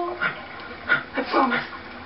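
A woman crying into a tissue: a few short sobbing sounds, the longest sliding down in pitch.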